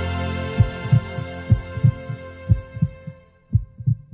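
A sustained music chord fades out while a heartbeat sound effect comes in about half a second in: low double thumps (lub-dub), roughly one pair a second.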